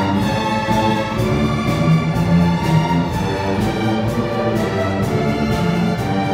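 Large massed string orchestra of violins, cellos and the other bowed strings playing together. The passage is rhythmic, with short sharp accents repeating throughout.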